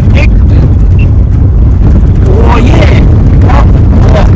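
Steady low rumble of a car on the move, heard from inside the cabin, with men's voices talking over it in the middle.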